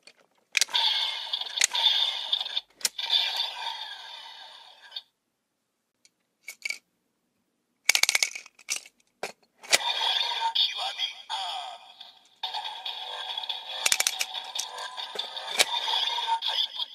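Bandai DX Evol Driver toy transformation belt playing its electronic voice calls and sound-effect music through its small built-in speaker, thin with no bass. The toy audio stops about five seconds in. A quick run of plastic clicks follows as the belt's handle is cranked, and then the belt's audio plays again.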